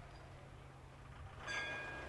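Faint hiss and low hum, then about one and a half seconds in a brief steady vehicle horn sounds for about half a second.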